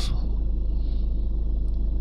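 Ford Mondeo 1.6 TDCi diesel engine idling, a steady low rumble heard from inside the car's cabin.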